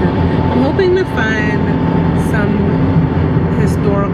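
Steady road and engine rumble inside a moving car's cabin at highway speed, with short snatches of a woman's voice.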